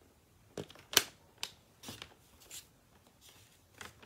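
Sheets of patterned paper being handled and cut to size: a series of short paper rustles and clicks, the loudest about a second in.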